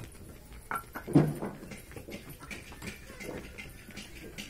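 Bricks knocking together in short sharp clacks as they are picked up and stacked, with one loud short call, a voice or bark, about a second in.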